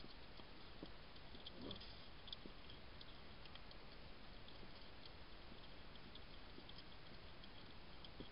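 Wild European hedgehog eating, heard as faint, scattered soft clicks of chewing over a steady hiss.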